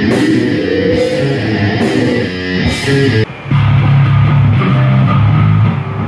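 Live rock band playing loud heavy rock: electric guitars, bass and drum kit with crashing cymbals. About three seconds in the music breaks off abruptly and a different passage starts, with long held low guitar chords.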